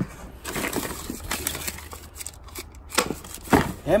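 Cardboard and paper rustling and scraping as gloved hands dig through a box of shoe boxes and papers, with two sharp knocks near the end.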